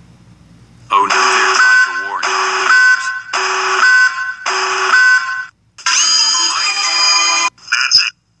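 Loud, harsh, distorted alarm-like warning sound effect: four blasts about a second apart, then one longer held blast after a short gap.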